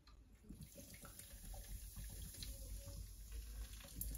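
Cola being poured from a can into a metal mixing bowl of dry cake mix: a faint, steady pour starting about half a second in.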